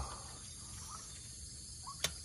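Faint outdoor background of insects chirping steadily over a low rumble, with a short chirp near the end.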